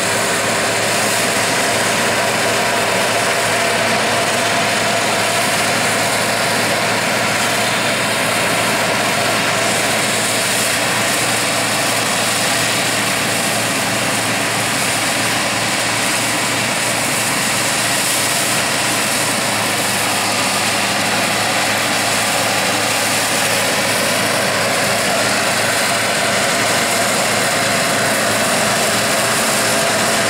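Bizon combine harvester running steadily as it drives across a stubble field: its diesel engine and machinery hold a constant pitch, with no revving.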